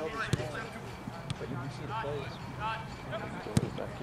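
Two sharp thuds of a soccer ball, the first about a third of a second in and a louder one near the end, over distant voices.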